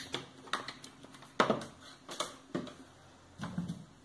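A handful of light, irregular clicks and taps from equipment being handled on a workbench, with a brief low murmur near the end.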